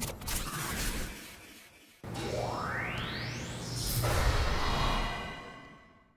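Edited sci-fi power-up sound effect of a machine starting up: a short burst that dies away, then a low rumble with a whine sweeping upward, a loud hit about four seconds in, and a fade-out near the end.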